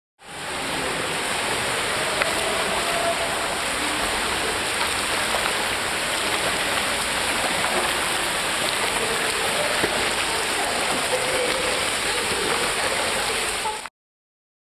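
Steady rushing and splashing of pool water stirred by a swimmer doing front crawl. It starts abruptly just after the beginning and cuts off near the end.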